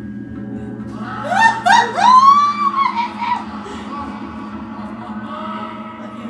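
A high-pitched voice gives a few short rising squeals, then one long held squeal, over steady background music.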